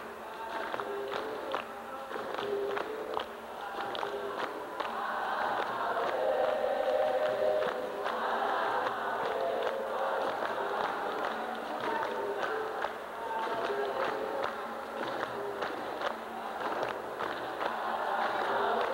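Capoeira roda music: a group singing together, swelling louder midway and again near the end, over berimbaus and steady hand clapping.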